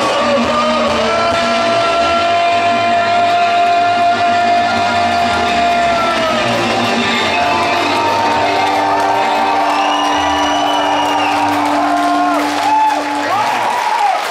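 Live rock band playing an instrumental passage: a violin holds long notes that slide between pitches over electric guitars and drums.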